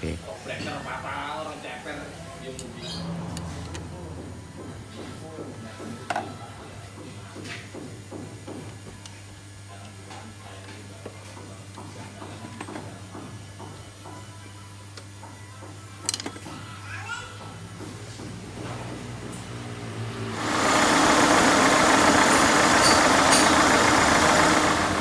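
Wrench and hose-fitting clicks with occasional sharp knocks over a low steady hum, as the power-steering hose is changed. About twenty seconds in, a loud steady running sound takes over: the Peugeot 206's TU3 engine running with its accessory belt turning.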